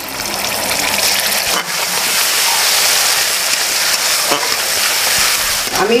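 Tomato paste sizzling in hot oil in an aluminium kadai as it is stirred in with a spatula: a steady frying hiss.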